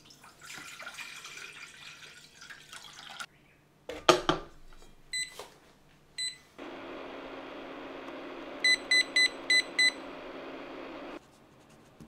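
Water poured from a plastic jug into a metal pot, then a clunk as the pot is set into a low-temperature cooker. The cooker's control panel beeps at button presses, single beeps and then a quick run of five, as it is set to 60 °C for 7 hours, over a steady running noise from the cooker that cuts off near the end.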